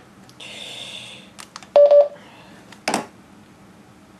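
Front-panel button clicks and one short, loud beep from a TYT TH-9800 mobile ham radio about two seconds in, the kind of key beep the radio gives as its power setting is changed. A brief hiss comes first and a single knock near the end.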